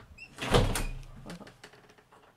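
A door shutting, with one loud bang about half a second in that fades quickly, followed by a few lighter knocks.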